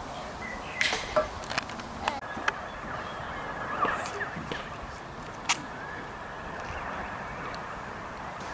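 Minigolf putters striking balls and balls knocking on the lanes and obstacles: a string of sharp, irregularly spaced clicks, the loudest cluster about a second in and a single sharp click about five and a half seconds in, over faint background noise.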